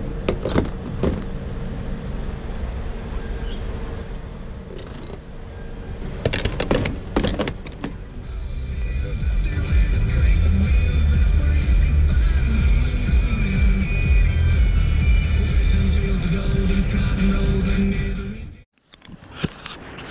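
Inside a moving car's cabin: a loud, steady low engine and road rumble, with music playing over it. Before that, about eight seconds of noise and scattered clicks at a fuel pump while the nozzle is in the tank.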